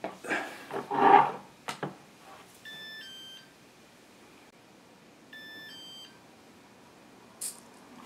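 A few handling knocks and rustles with a sharp click in the first two seconds. Then an RC radio transmitter gives a two-note falling beep, repeated about two and a half seconds later, as it establishes the link with the Walkera V400D02 helicopter's receiver.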